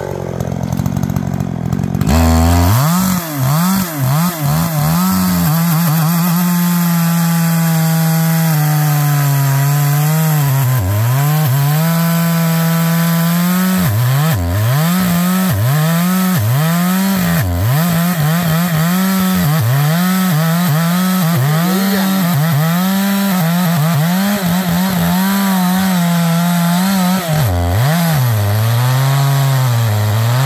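Small two-stroke chainsaw, a GZ4350, revving up about two seconds in and cutting into the base of a very hard-wooded tree trunk. Its engine note holds high for several seconds, then dips and recovers roughly once a second as the chain bogs down in the dense wood during the felling cut.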